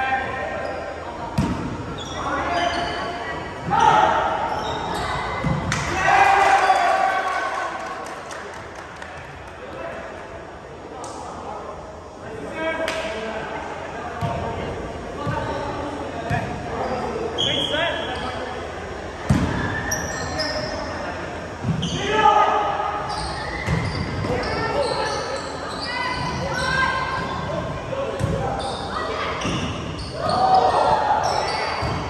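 A volleyball being struck and bouncing on a hardwood gym floor, with sharp smacks every few seconds. Players and onlookers call out between the hits, and it all echoes around the large hall.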